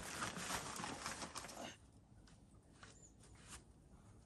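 Faint rustling and scuffing of a climber shifting on a foam crash pad and reaching for the start holds. It dies away to near quiet a little under two seconds in, leaving a few faint taps.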